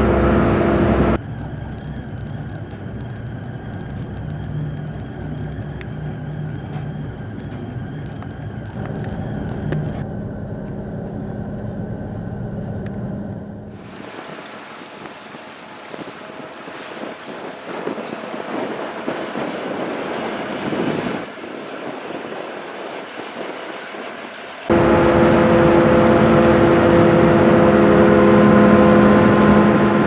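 Car ferry's engines and machinery running with a steady hum and a few fixed tones, heard in several cuts. About halfway through the hum gives way to a quieter hiss of wind and water. In the last few seconds a louder machinery drone with several steady tones takes over as the ship comes alongside.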